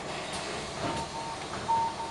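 Door warning beeper of a VDL Citea SFLA 180 articulated city bus: two steady half-second beeps of one pitch, the second louder, over the bus's interior hum. Warning that the doors are about to close.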